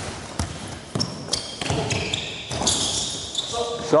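A basketball being dribbled and bounced on a court during live play: a few irregular sharp bounces in the first second and a half, with short high squeaks later on.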